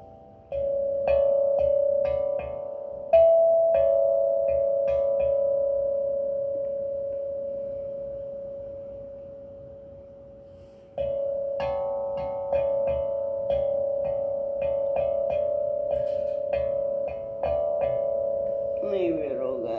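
Six-inch steel tongue drum struck with a mallet: a short run of ringing notes, then one note left to ring and fade away for about seven seconds, then another run of notes.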